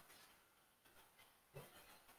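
Near silence: faint room tone with a few soft clicks and one slightly louder soft sound about one and a half seconds in.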